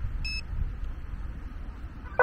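A single short electronic beep from the drone app or controller about a quarter of a second in, as video recording starts, over a steady low rumble.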